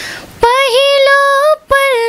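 A young woman singing a slow folk-style melody unaccompanied, holding long notes with small turns in pitch. She takes a breath just before the singing starts, and again briefly about a second and a half in.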